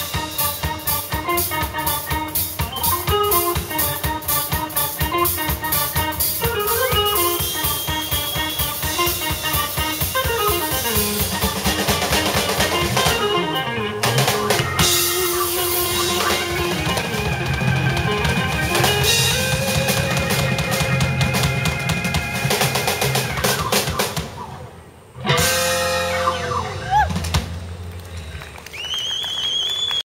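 A live band playing an instrumental jam: drum kit, electric guitar, bass guitar and keyboard. Near the end the music drops away briefly, then comes back with a sharp, loud hit that rings out.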